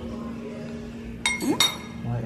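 Glass bowl clinking twice, about a third of a second apart, each strike leaving a short bright ring.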